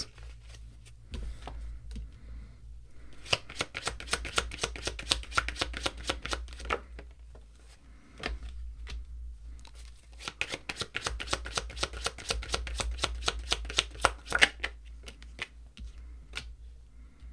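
A tarot deck being shuffled by hand: rapid, continuous clicking and flicking of cards in two long spells, with a lighter patch in the middle.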